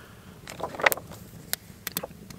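A glossy paper wall calendar's cover page being flipped up, a brief rustle of stiff paper about half a second in, with a few sharp clicks, one about a second in and two near the end.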